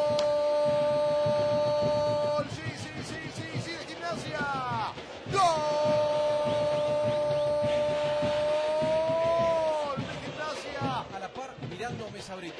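A football commentator's drawn-out goal cry: one long held shout of "gol" that breaks off about two and a half seconds in, a few short shouts, then a second long held call from about five and a half to ten seconds that sags in pitch at the end. Stadium crowd noise runs beneath.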